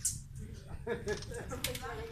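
Hummingbirds at a feeder giving short, high squeaky chips, about two a second, over low voices talking in the background.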